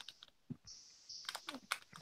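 Faint, irregular keystroke clicks of typing on a computer keyboard, with a soft hiss in the second half.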